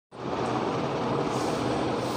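Steady background noise, a constant even hum and hiss with no distinct events, starting a moment after the recording begins.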